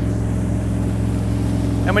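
Tow boat's engine running at a steady cruising speed, a low even drone with no change in pitch.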